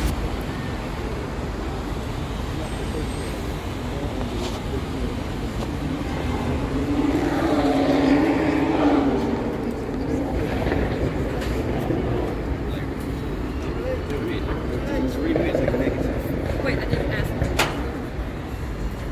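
City street traffic: a steady low rumble of passing vehicles that swells to its loudest about eight seconds in, with a sharp click near the end.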